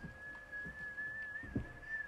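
A person whistling one long, steady, slightly wavering note, with a few soft thumps underneath.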